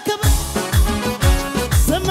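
Ethiopian gospel worship music from a band: a kick drum on a steady beat about twice a second under held chords, with a singer's voice wavering in near the end.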